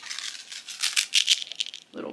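Small packaged trinkets being handled and rummaged through, a quick irregular run of rattling and rustling for about two seconds.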